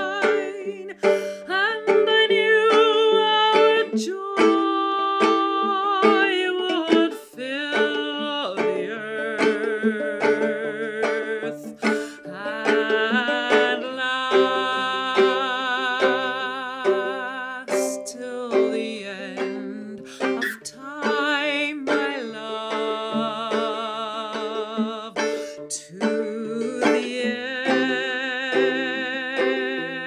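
Mezzo-soprano singing long held notes with vibrato, accompanied by a long-scale low Irish tenor banjo that is fingerpicked without a plectrum.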